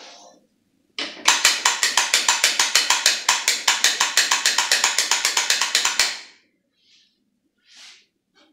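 Fast, even clacking, about eight to nine strokes a second for about five seconds, starting about a second in: a coffee grinder's doser lever being flicked repeatedly to drop ground coffee into an espresso portafilter.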